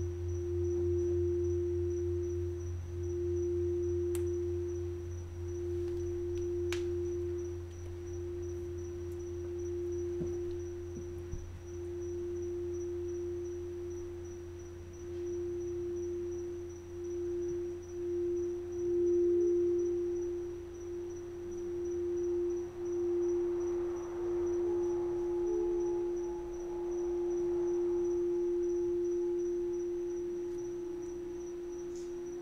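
Crystal singing bowl sung by rubbing a mallet round its rim: one steady ringing tone that swells and dips every couple of seconds. A low hum under it fades out about a third of the way in, and a second, higher tone joins near the end.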